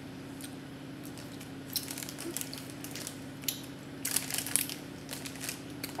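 Plastic lolly bag crinkling in short, irregular crackles as a gummy is taken out, starting about two seconds in and thickest around four seconds in, over a steady low hum.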